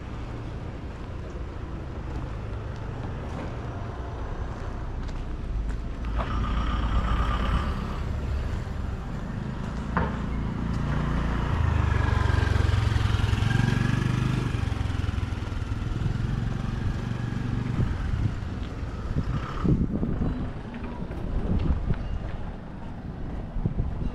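Low engine rumble of a motor vehicle passing on the street, swelling to its loudest around the middle and then easing off.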